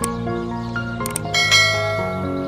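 Instrumental background music with a subscribe-button sound effect over it. Mouse clicks come at the start and again about a second in, then a bright bell ding rings out about a second and a half in.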